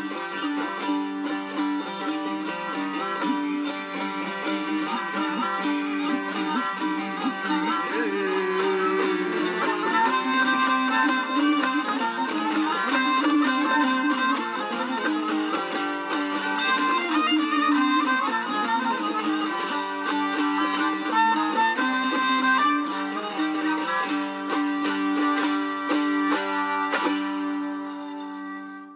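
Turkmen folk instrumental: a dutar, the two-string long-necked lute, is strummed while a gyjak spike fiddle bows the melody over sustained low notes. The music fades out near the end.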